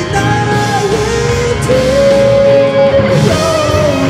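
Live rock band playing: electric guitars, bass guitar and drums, with a long held melody note over them that steps up in pitch about two seconds in.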